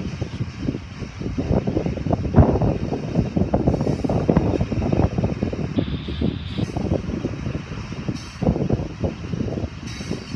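Union Pacific mixed freight train rolling past at a road crossing, tank cars going by: an uneven low rumble and clatter of wagon wheels on the rails.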